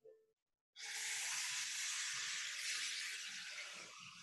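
Steady hiss of an open microphone on a video call, switching on abruptly about a second in and fading away near the end.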